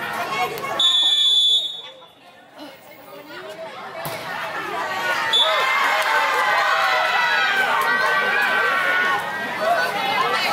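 Referee's whistle blown in one steady blast of under a second about a second in, then a short blast about five seconds in, the signal for the serve. Many crowd voices then rise and carry on through the rally.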